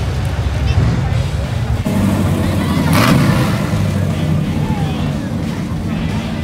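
A red convertible muscle car's engine rumbling as it drives slowly past, swelling to its loudest about three seconds in, over crowd chatter.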